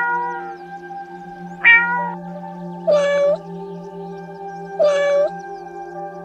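A domestic cat meowing about four times: two short, higher meows in the first two seconds, then two longer, lower meows about two seconds apart. Soft ambient music with held tones plays underneath.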